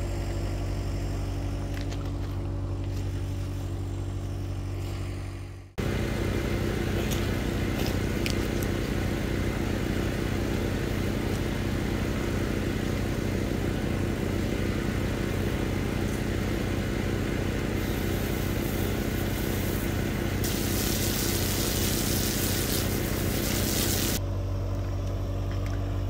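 A vehicle engine idling steadily, a low, even hum that does not change pitch. It cuts out abruptly about six seconds in and resumes at once, and a hiss rises over it for a few seconds before it changes again near the end.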